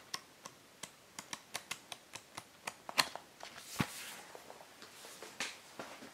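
Pages of a Blu-ray digibook's paper booklet being flipped through by hand: a run of light, quick page flicks, with a brief rustle of handling a little after halfway.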